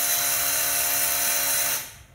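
A power tool running steadily, with a strong high hiss and a steady whine, cutting off suddenly shortly before the end.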